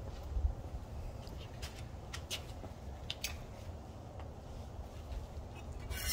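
A few faint, scattered clicks and light taps as the air compressor's run capacitor and its wire connectors are handled by hand, over a low steady rumble.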